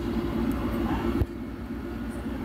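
Steady low rumbling background noise, with a short knock just after a second in.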